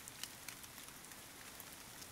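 Faint steady background rain, an even hiss with scattered small drop ticks.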